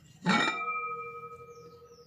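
Aluminium sufuria lid knocking against the pot as it is lifted off: one clank that rings on with a clear metallic tone, fading over about a second and a half.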